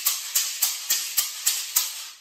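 A pair of maracas shaken in a steady beat, each stroke a sharp rattle of the beads inside, about three and a half strokes a second. The playing stops near the end.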